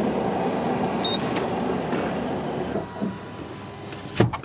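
A steady mechanical whirring that stops about three seconds in, with a short high electronic beep and a click just after a second in as a button on a car wash pay station is pressed.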